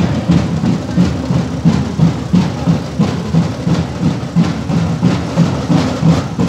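Drums playing a steady parade beat: a deep drum strikes about three times a second, with sharper snare-like hits over it.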